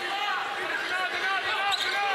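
Live sound of a college basketball game in an arena: a ball bouncing on the hardwood court over crowd noise and faint, indistinct voices.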